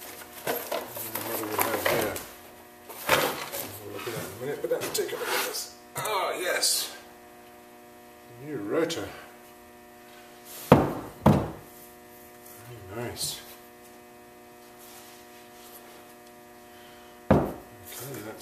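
Cardboard box and packing rustling as a drilled and slotted steel brake rotor is lifted out and handled, with sharp metallic clunks of the disc on the wooden bench about eleven seconds in and again near the end. A steady electrical hum runs underneath.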